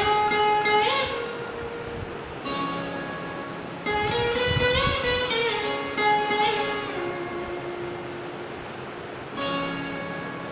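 Mohan veena, the Indian slide guitar, played solo in a slow melody: notes struck every couple of seconds ring on and glide up and down in pitch under the slide.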